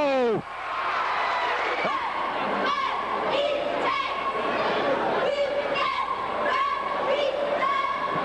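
High-school cheerleading squad chanting a cheer in unison, short shouted syllables in a steady rhythm, over crowd noise echoing in a gym.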